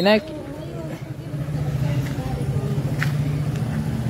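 A motor vehicle's engine running with a steady low hum, building up about a second in.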